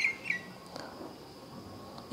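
A bird calling outdoors: a quick run of short, high chirps that stops about a third of a second in, leaving faint outdoor background.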